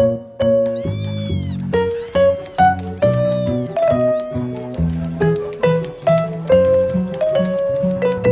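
A domestic cat meowing four times, each call rising then falling in pitch, over bright keyboard music with a steady run of notes.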